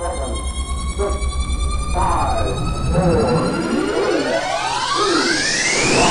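Siren-like electronic sound: a steady high tone with many rising and falling pitch sweeps layered over it, one long sweep climbing steadily toward the end, over a low rumble that fades out about three seconds in.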